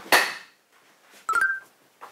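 A brief breathy laugh, then, about 1.3 seconds in, a short electronic blip sound effect of two quick notes stepping up in pitch.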